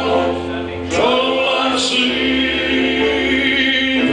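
A man singing a slow gospel song into a microphone, holding long notes, with choir-like harmony voices behind him.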